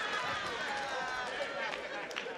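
A man's wordless vocal noises, strained grunts and exclamations, over a stage microphone as he mimes a sprinting hurdler.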